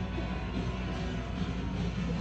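Steady low rumble with faint background music playing.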